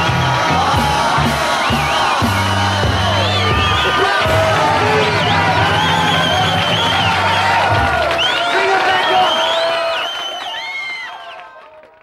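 Closing bars of a 1960s British beat-group comedy record: the band playing with a steady bass line while voices whoop and cheer like a crowd, then fading out over the last two seconds.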